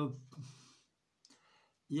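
A man's voice speaking Romanian trails off into a short pause with faint mouth noises, then speaks again just before the end.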